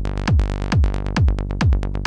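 Rolling 16th-note techno bassline from a mono saw patch in Ableton Wavetable, looping over a kick drum at about two kicks a second. The filter envelope's decay is being turned down, so the bass is bright and open near the start and has closed to short, plucky notes by the end.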